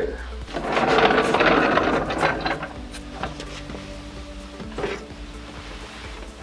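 Swivel casters on a small wooden cart rolling across the shop floor: a rattling clatter of about two seconds, after which it goes much quieter.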